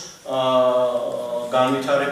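A man's voice drawing out a single vowel at a steady pitch for about a second, then going on speaking.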